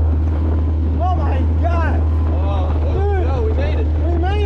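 Outboard motor of a small plastic boat running at a steady speed, a continuous low drone, with wind on the microphone. Voices call out over it.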